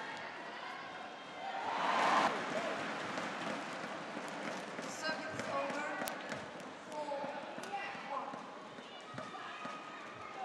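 Badminton rally: sharp cracks of rackets striking the shuttlecock, a few seconds apart, over a busy crowd of voices that swells into cheering about two seconds in.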